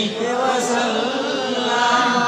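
A man's voice chanting in long, drawn-out melodic notes, the sung delivery of a preacher's sermon.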